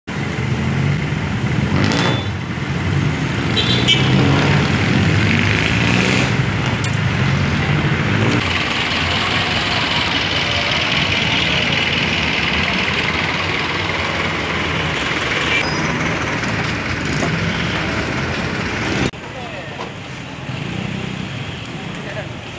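Busy city street traffic: jeepney and other vehicle engines running close by, with people's voices around. The level drops suddenly near the end.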